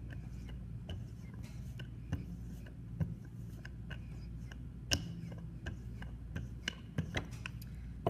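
Wooden rolling pin rolled back and forth over a clay slab, its ends riding on wooden guide strips: scattered sharp clicks and knocks over a steady low hum, the loudest knock about five seconds in and a quick cluster shortly before the end.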